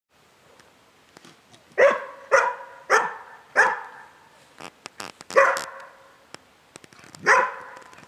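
A search-and-rescue dog barks repeatedly at the hatch of a covered pipe hide. This is the bark indication a trained search dog gives on finding a hidden person. The barking starts about two seconds in with four barks in quick succession, followed by two more spaced farther apart, with a few faint clicks between them.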